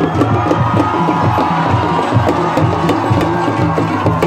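Loud drum-led music with a quick, steady percussion beat, over the noise of a large crowd.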